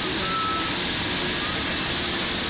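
CNC lathe turning a metal workpiece under a coolant spray: a steady wash of spindle, coolant and cutting noise. A brief faint high tone sounds about half a second in, and again faintly near the end.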